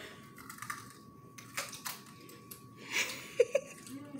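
Crisp crunches of people biting into and chewing fresh cucumber pieces, a few short sharp crunches spread out across a few seconds.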